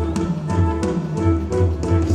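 Live cumbia band playing at full volume: a bass line pulsing in a steady beat under held melody notes, with drum-kit strokes and cymbals.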